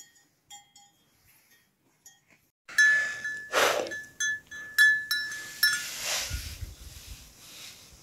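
Small metal bells clinking faintly. About three seconds in, a louder bell with one clear tone rings, struck about six times over three seconds, with gusts of wind buffeting the microphone.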